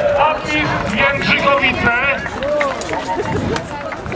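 A group of men's voices shouting and cheering together, many voices overlapping.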